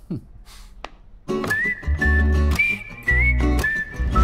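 Music starts about a second in: a whistled melody gliding between high notes over chords and heavy bass notes.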